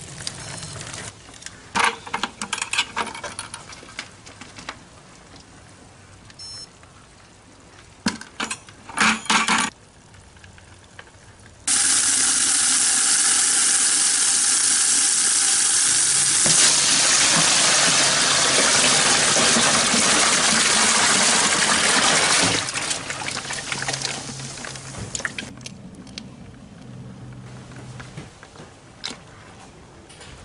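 Water from a garden hose gushing into a plastic bucket and cooler for about ten seconds, its tone changing about halfway through as the container fills. Before it, scattered knocks and rattles.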